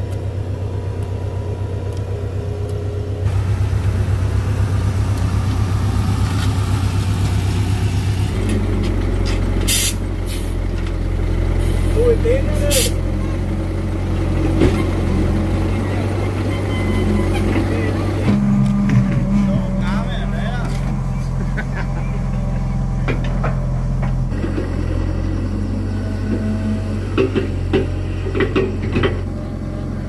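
Mini excavator's diesel engine running steadily under load as it digs and swings soil, its note shifting partway through, with a few sharp knocks from the bucket and earth.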